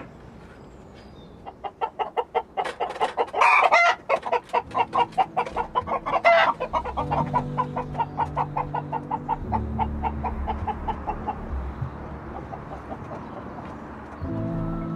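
Chickens clucking in a fast run of short clucks, with two louder squawks about three and a half and six seconds in; the clucking thins out near the end.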